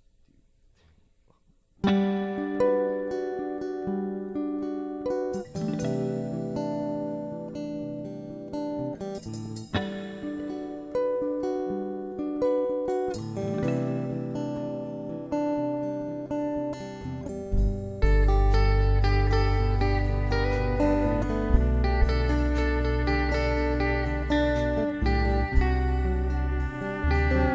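After about two seconds of near silence, guitars begin an instrumental intro: picked single notes from a hollow-body electric guitar ring over chords. Deep bass guitar notes join about two-thirds of the way through.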